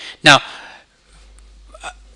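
Speech only: a man says one short word, then pauses briefly.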